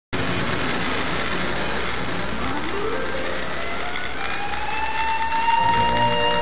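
Tinplate toy train running on three-rail tinplate track: a steady, dense rattle of wheels and motor, with a whine that climbs in pitch through the middle and then holds. Music comes in near the end.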